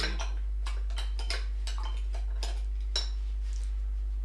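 Irregular light clinks and taps of small hard objects, like metal or glass against glass or crockery, about ten over a few seconds, over a steady low electrical hum.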